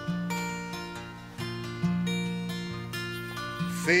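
Acoustic band playing an instrumental stretch between sung lines: strummed acoustic guitar chords over upright bass notes that change every second or so. The voice comes back in right at the end.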